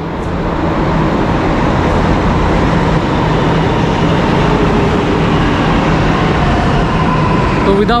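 Delhi Metro train running past at a station: a loud, steady rumble with a faint whine.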